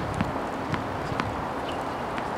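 Tennis ball bounced on a hard court before a serve: three sharp bounces about half a second apart, over a steady outdoor background hiss.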